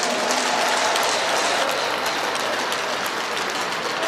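Audience applauding: a steady patter of many hands clapping that tapers slightly near the end.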